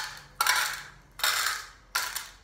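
Small rocks dropped one at a time into the cups of a metal muffin tin, each landing with a sharp metallic clink that rings briefly. Three clinks come about a second apart.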